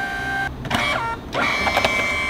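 Kodak Dock Plus dye-sublimation photo printer's feed motor whining as it runs the print through the final lamination pass and feeds it out. The steady whine stops about half a second in, a short falling whir follows, and a higher-pitched steady whine starts a little before halfway.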